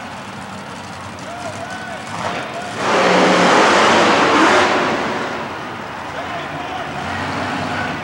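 Monster truck engines running hard as the trucks race over a row of cars. The engine noise swells to its loudest for about two seconds in the middle, then eases off.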